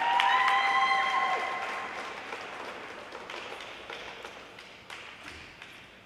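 Arena audience applauding a figure skater as he takes his starting position, with a long high cheer over the clapping at the start. The applause fades away over the following seconds.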